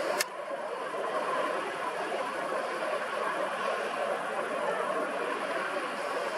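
Steady noise of road traffic on a busy road. A single sharp click sounds just after the start.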